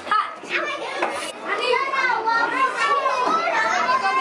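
A group of young children talking and calling out at once while they play, several high voices overlapping.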